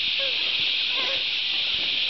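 A steady high-pitched hiss, with a few faint short tones about half a second and a second in.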